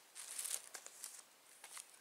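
Faint crinkling of a thin clear plastic bag being handled, in a few short rustles, most of them in the first second.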